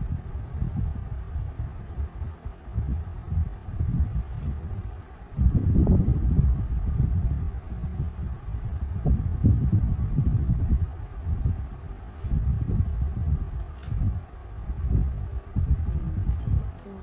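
Low, uneven rubbing and bumping of hands and arms moving over paper on a tabletop, in loose surges, with a few faint clicks as crayons are handled in their box.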